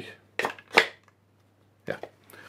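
Two short wooden knocks, the second louder, as the pieces of a wooden interlocking joint are handled and knock together.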